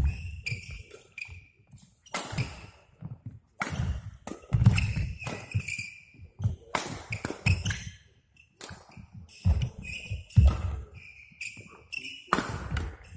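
Badminton rally on an indoor court: sharp racket strikes on the shuttlecock, sports shoes squeaking briefly on the court floor, and footfalls thudding as the players lunge and jump.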